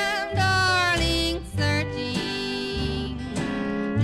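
Country song played back from a 1958 radio transcription disc: a lead melody with vibrato over strummed acoustic guitar and bass.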